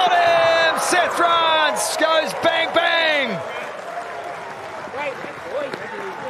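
Cricket fielders shouting in celebration as a wicket falls: a run of loud cries, each falling in pitch, over the first three and a half seconds, then quieter calls.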